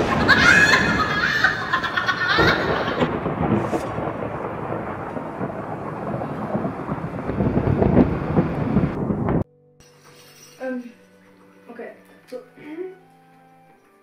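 A loud, steady, rumbling rush of noise that cuts off abruptly about nine and a half seconds in, followed by quiet room tone with a few words.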